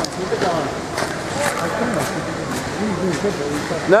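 Background chatter: several people talking at once, none of it clear words, with a few faint clicks.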